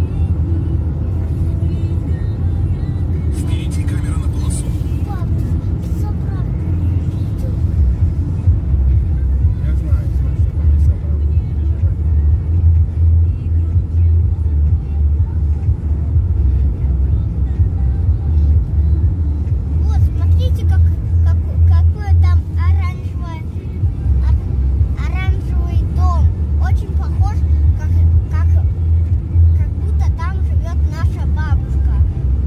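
Steady low rumble of a car's engine and tyres heard inside the cabin while driving at road speed, with voices over it in the second half.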